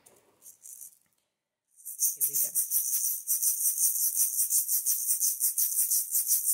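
A shaker rattling in a steady, quick rhythm, starting about two seconds in as the accompaniment to a call-and-response song begins.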